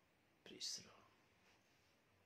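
Near silence with room tone, broken about half a second in by one short, breathy, whisper-like sound from a man's voice.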